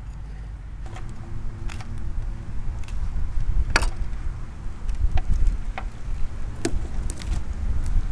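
A scattering of sharp clicks and taps, about eight in all and loudest a little before four seconds in, as a fish and a fillet knife are handled on a plastic fish-cleaning board and wooden table, over a steady low rumble.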